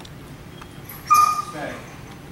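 German Shepherd giving one short, high-pitched whine about a second in, trailing off with a falling pitch.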